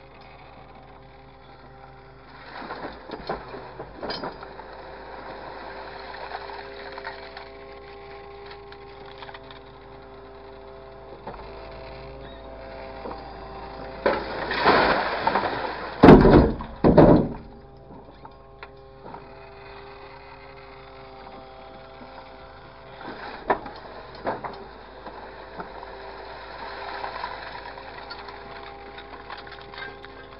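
Engine and hydraulics of an orange-peel grapple machine running with a steady hum, with noisy bursts as the grapple handles a load of waste. The loudest stretch, around the middle, is material dropping into a steel container, with two heavy thuds about a second apart.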